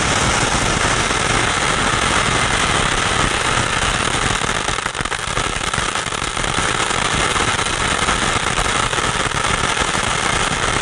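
Sky King 'Star Show' crackling shower ground fountain firework burning: a dense, continuous crackling of popping stars over the steady rush of its spark jet. The crackling dips briefly about halfway through.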